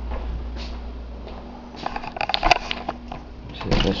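Handling noise: a low hum that stops within the first half second, then a cluster of sharp clicks and knocks about halfway through and a louder thump near the end.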